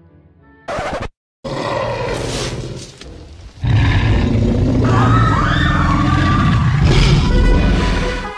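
Loud dinosaur-roar sound effects over music. A short roar starts about a second in and is cut off abruptly. A longer, louder, deep roar follows from about three and a half seconds in.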